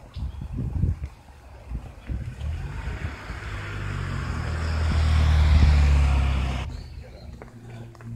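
A motor vehicle passing close by on the road: engine hum and tyre noise grow steadily louder for a few seconds, then cut off suddenly about two-thirds of the way through.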